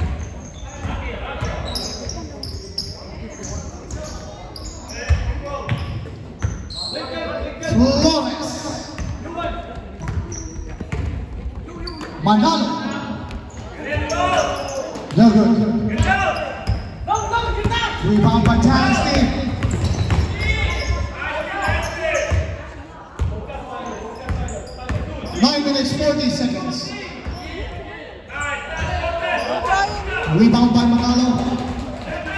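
A basketball being dribbled and bouncing on a hardwood gym floor during play, with voices calling out and echoing around a large hall.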